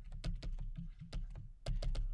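Scattered light clicks and taps of a stylus on a pen tablet as a word is handwritten, over a steady low hum.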